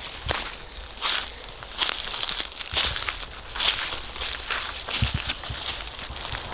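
Metal-tined rake scraping across bare dirt and leaf litter, clearing the ground for a mock scrape, in several strokes about a second apart.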